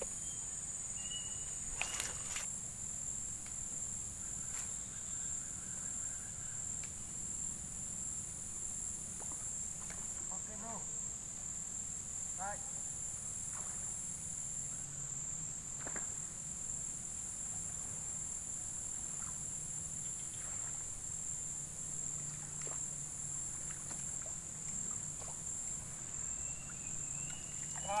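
Steady, high-pitched chorus of insects over open rice fields, unchanging throughout, with a sharp click about two seconds in and a few faint short chirps scattered through.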